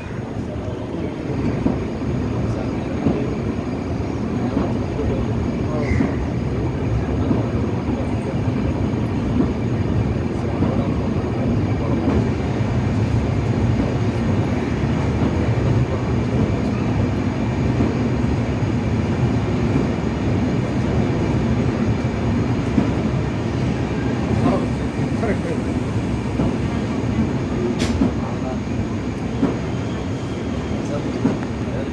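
Indian Railways express train heard from inside a coach as it pulls out of the station: a steady low rumble of wheels on the rails, with occasional faint clicks.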